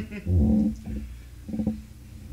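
Two brief wordless voice sounds from a man: a louder one about half a second long just after the start, and a shorter one about a second and a half in.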